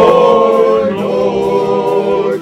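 A group of men singing together unaccompanied, holding long notes.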